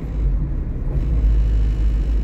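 Steady low rumble of a car driving along a paved road: engine and tyre noise from the moving vehicle.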